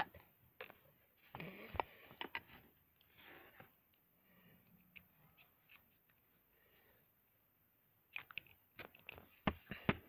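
Faint, scattered small plastic clicks and scrapes as a Color Wonder marker is handled and its cap is pushed back on. The clicks come in a cluster about a second in and again near the end.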